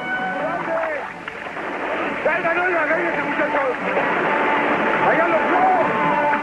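Several voices shouting and yelling without clear words, in drawn-out, wavering cries, over the splashing of people and horses wading through a river. Film-score music comes in near the end.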